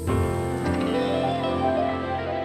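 Soft, slow background music of sustained notes, with piano among the instruments, playing under an end screen.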